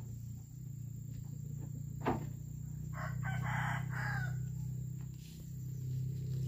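A rooster crowing once, about three seconds in, lasting just over a second, over a steady low hum. A sharp knock, the loudest sound, comes shortly before the crow.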